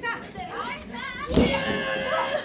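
High-pitched shouts and yells during a women's pro wrestling bout. A single sharp smack comes about one and a half seconds in, followed by a long held yell.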